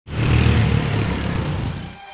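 A go-kart engine sound that starts suddenly, is loudest at first, and fades away toward the end.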